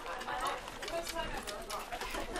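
Indistinct voices of people talking, with scattered light knocks.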